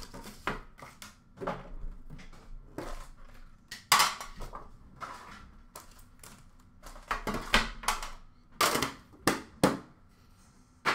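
Metal Upper Deck hockey card tins being opened and handled: irregular sharp clanks and knocks as lids come off and tins are set down on a glass counter, with card packs pulled out and stacked. The loudest knocks come about four seconds in and in a quick cluster near the end.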